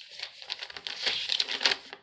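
A folded slip of torn lined notebook paper being unfolded by hand, crinkling in a run of irregular small crackles.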